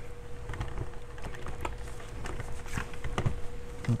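Light, irregular plastic clicks and knocks as an infant car seat is handled and fitted onto a stroller's mounting points.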